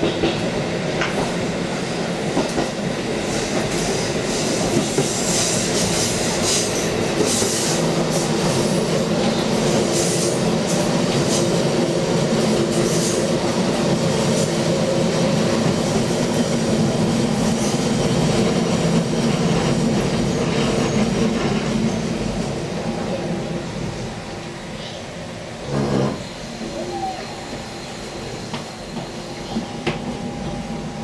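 Inside a KiHa 40-series diesel railcar running through curves: steady engine and wheel-on-rail rumble, with high-pitched wheel squeal in the first half. The noise eases off about two-thirds through as the train slows, with a single short knock near the end.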